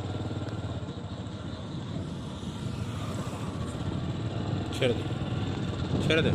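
Motorcycle engine running steadily at cruising speed while riding, with road noise.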